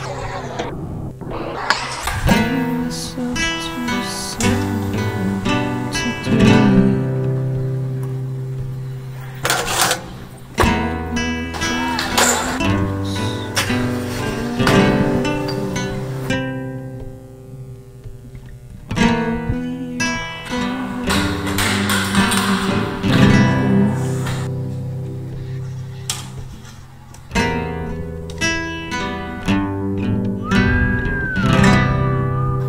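Background music: acoustic guitar playing in a flamenco style, with plucked and strummed chords.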